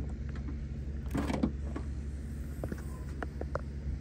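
The rear liftgate of a 2021 Kia Seltos being opened: a short rush of noise about a second in as it unlatches and lifts, then a few light clicks.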